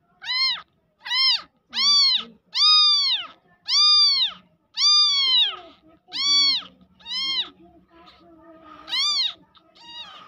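Newborn kitten mewing loudly and repeatedly: about nine high cries, each rising and then falling in pitch, with a short pause near the end before one more.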